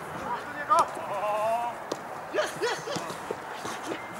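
Players' shouts and calls from across an outdoor football pitch. Between the calls come a few short, sharp knocks.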